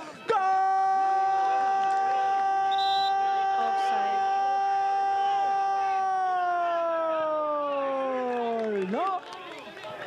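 Football commentator's long, drawn-out goal cry: one held shouted note lasting about nine seconds, its pitch sinking and the voice giving out near the end. Faint crowd noise underneath.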